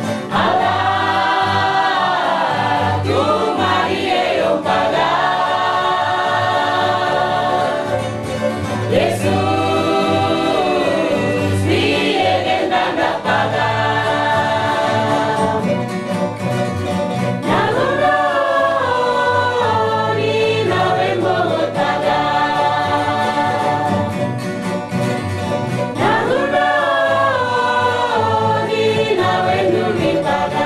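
A choir singing with instrumental accompaniment, in long held phrases.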